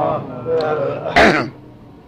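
A man clearing his throat with one short, harsh cough about a second in, after a few low murmured syllables.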